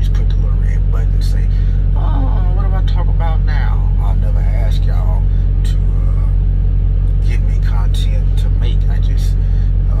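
Truck engine idling, a steady low rumble heard from inside the cab.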